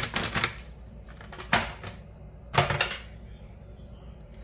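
Sliced almonds pouring from a plastic bag into a bowl: a quick rattle of small clicks at first, then two louder rustles of the bag about a second apart.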